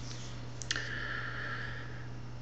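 Two sharp clicks close together, then a short scratchy hiss lasting about a second, over a steady low hum.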